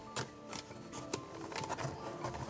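Quiet background music, with soft rubbing and a couple of light knocks as stiff card packaging is handled.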